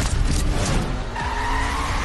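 Film-trailer car sound effects: a car engine running and tires squealing in a skid, the squeal coming in about a second in, over a faint music score.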